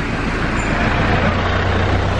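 A small lorry driving past on a lane: a steady low engine hum with tyre and road noise that grows louder as it passes.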